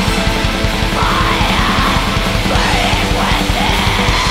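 Black metal recording: a dense wall of distorted guitars and fast drumming, with harsh screamed vocals coming in about a second in.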